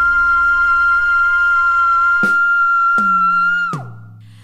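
A young female singer holding one very high, whistle-like note over a recorded backing track, whose lower chords change twice beneath it. Near the end the note slides down and stops.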